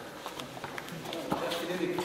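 A few soft, separate knocks of bare feet stepping and bodies shifting on foam floor mats, under faint voices.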